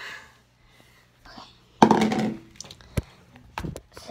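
Handling noise from a phone being moved and bumped: a loud rubbing burst about two seconds in, then a few sharp knocks.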